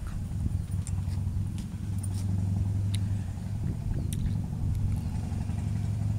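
An engine running steadily at idle: a low, even drone, with a few faint clicks over it.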